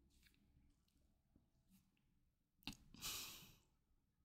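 Near silence: quiet room tone, broken near the end by a faint click and then a short breath out, like a sigh.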